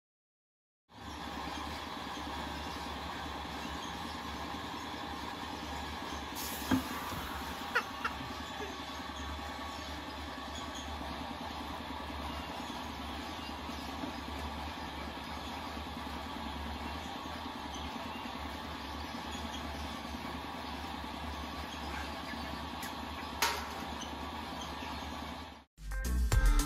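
Steady low engine-like rumble, with a few light clicks and knocks standing out above it.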